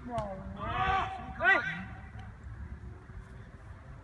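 Men's voices exclaiming: a drawn-out "oh" and then a short shout with a rising-falling pitch, the loudest sound, about a second and a half in. After that comes quieter open-air background with a few faint knocks.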